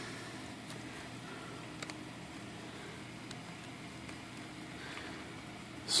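Quiet room tone with a steady faint low hum, and a few faint ticks from a plastic knife being handled and turned in the fingers.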